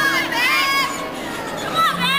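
Several high-pitched voices shouting and cheering over one another in short, rising-and-falling calls of encouragement as a gymnast swings on the uneven bars.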